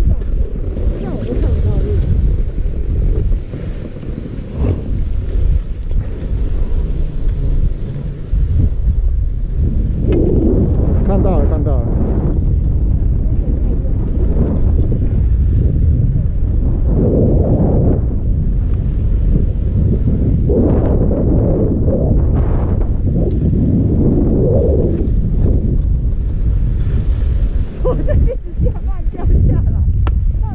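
Wind buffeting a GoPro Hero5 Black's microphone on the slope, a heavy low rumble throughout, with louder swells in the middle and later part.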